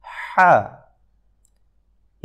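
A voice pronouncing the Arabic letter ḥā' (ح) once as a demonstration: a breathy friction from the middle of the throat opening into a short 'ha' with falling pitch, then silence.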